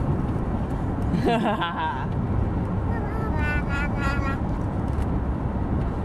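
Steady road rumble inside a moving car. Over it a baby vocalizes: a sliding, high-pitched squeal about a second in, then short bursts of babbling a couple of seconds later.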